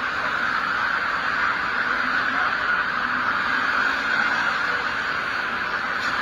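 Steady street traffic noise with a constant hiss.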